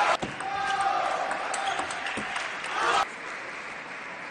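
Raised voices shouting and cheering in a table tennis hall, cut off abruptly about three seconds in, leaving quieter hall ambience.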